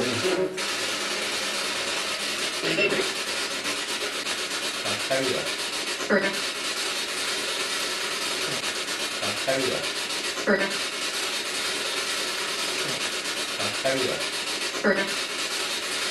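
Handheld P-SB7 spirit box sweeping through radio frequencies: continuous rasping static broken every few seconds by short, clipped fragments of voice. The investigators take one fragment for the word "pervert".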